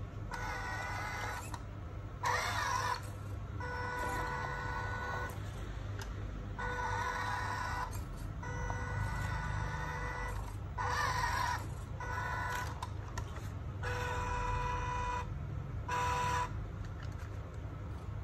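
Electric drive motor and gearbox of an MN82 Pro RC pickup truck whining in about nine short throttle bursts of one to two seconds each, with a steady pitched whine in each burst.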